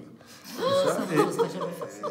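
A person chuckling, starting about half a second in.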